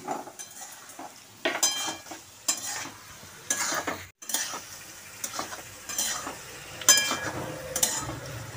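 A metal spatula scraping and stirring potato chunks in masala in an aluminium kadai, over a light frying sizzle; short scrapes come about once a second, each with a brief metallic ring, with a short break about four seconds in.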